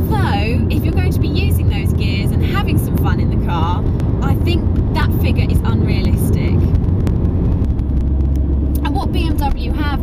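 Steady low drone of a Mini Cooper S R53's supercharged 1.6-litre four-cylinder engine and tyre noise, heard inside the cabin while driving, with a woman talking over it. The drone settles lower about eight seconds in.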